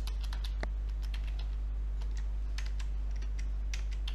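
Typing on a computer keyboard: irregular, scattered key clicks as a terminal command is typed, over a steady low electrical hum.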